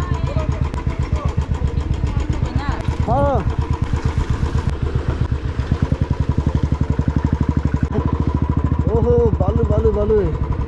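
Motorcycle engine running under way, a steady rapid thumping pulse as it rides along a rough dirt track.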